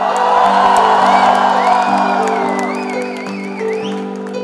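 A young woman singing through a microphone and PA over steady held instrumental chords, while a crowd cheers and whoops, loudest in the first two seconds.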